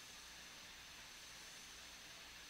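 Near silence: the faint, steady hiss of an old radio broadcast recording, with a thin high tone running through it.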